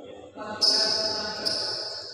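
A person's voice calling out loudly, starting suddenly about half a second in, with a second push about a second later.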